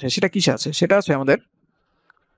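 A man's voice speaking for about a second and a half, then silence.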